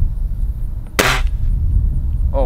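A scoped air rifle firing one sharp shot about a second in.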